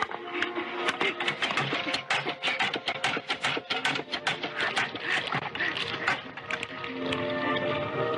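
Film soundtrack of a hand water pump being worked: a quick, irregular run of clatter and splashing with a few vocal sounds, under music that settles into held chords near the end.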